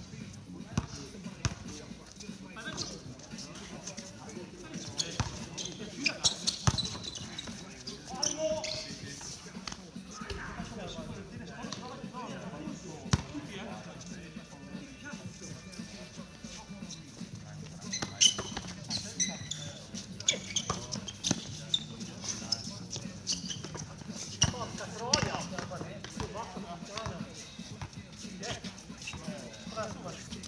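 A basketball bouncing on a hard court during a pickup game: irregular dribbles and thuds of varying loudness scattered throughout, among players' voices.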